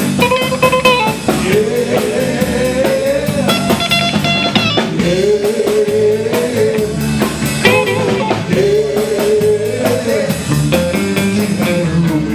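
A live rock'n'roll band playing: electric guitar and drum kit with a steady beat, and long held sung notes over them.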